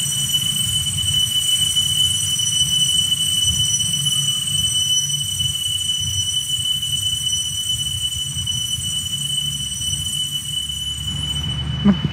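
Small altar bells rung continuously for the elevation of the chalice at the consecration, heard as one sustained high ringing that stops just before the end.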